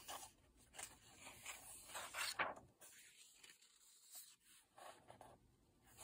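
A few faint rustles and scrapes of paper as a page of a paperback coloring book is turned and a hand brushes across it.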